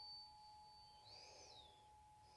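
Tuning fork ringing on faintly after a mallet strike, one steady tone that holds throughout, with a higher overtone that dies out about halfway. A faint high chirp rises and falls in the second half.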